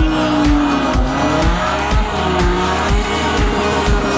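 Drift cars sliding in tandem, engine note dipping and then rising again with tyre squeal, heard under a dance music track with a steady beat of about two kicks a second.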